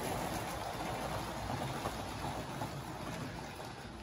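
A Wrenn model steam locomotive running on Tri-ang Super 4 track while hauling Pullman coaches: a steady rumble of the motor and the wheels on the rails, growing slightly fainter towards the end as the train moves away.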